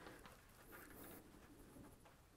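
Near silence: faint room tone with light rustling as a belt is handled.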